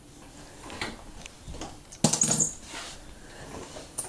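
Small objects being rummaged through in a shoebox: soft scattered taps and rustles, with a louder clatter and brief high clink about two seconds in.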